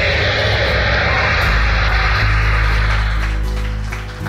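Background music: a held, swelling chord over a steady deep bass, easing off near the end.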